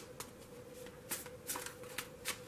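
A deck of tarot cards shuffled by hand: a handful of short, soft, crisp strokes at uneven intervals, over a faint steady hum.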